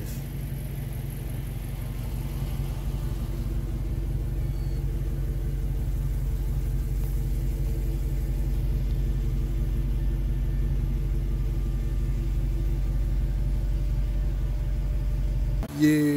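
A car engine idling steadily, an even low rumble that cuts off abruptly near the end.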